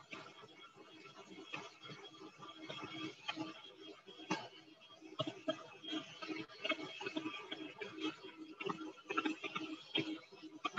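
Electric mixer with a whisk attachment running on high, beating egg whites and sugar toward stiff peaks, with an uneven hum and irregular ticking and clicking throughout.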